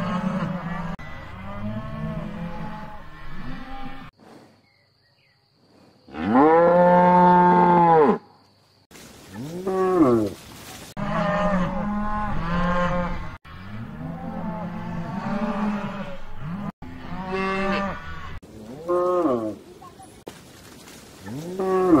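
Cattle mooing in a string of separate calls, each rising then falling in pitch, some overlapping. The loudest is one long moo about six seconds in, after a brief silent gap. The calls are spliced together with sudden cuts.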